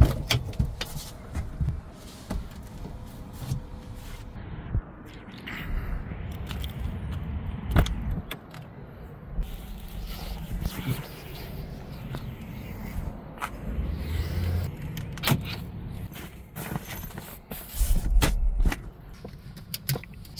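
Handling noises inside a parked car: scattered clicks, knocks and rustling as clothes and gear are moved about, with one sharp knock about eight seconds in.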